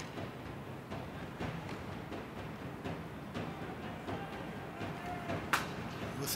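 Ice hockey arena sound during live play: a steady murmur of rink and crowd noise with scattered knocks of sticks and puck, and one sharp crack about five and a half seconds in.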